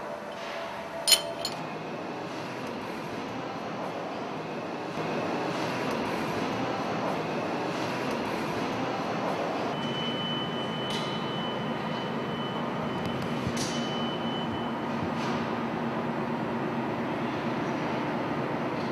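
Steady machinery hum that grows louder about five seconds in, with a few light metallic clinks of tools on the engine's metal parts.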